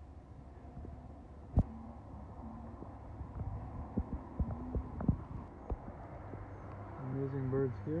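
Handling noise on a hand-held camera's microphone: scattered knocks and clicks over a low steady hum, with one sharp, loud click about a second and a half in. A person's voice hums briefly near the end.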